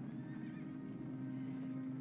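Horses on a drama's soundtrack, moving and calling, over a low steady drone of background score.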